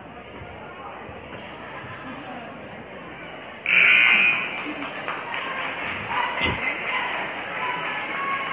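A gymnasium scoreboard buzzer sounds once, loud, for about half a second about four seconds in, over the murmur of a basketball crowd, which grows louder after it. The blast comes as a timeout runs out, the kind that signals play to resume. A single thud follows a few seconds later.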